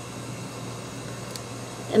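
Quiet room tone: a steady low hum with faint hiss, and no distinct event.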